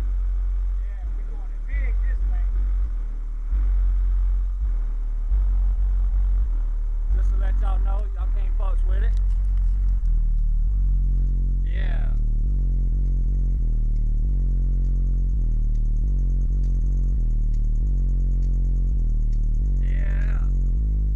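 Car-audio subwoofers, two DB Drive Platinum-series 15s on a 3000-watt Audiobahn amp, playing bass-heavy music loud, with deep bass notes stepping from one to the next. Voices shout or rap over the bass now and then.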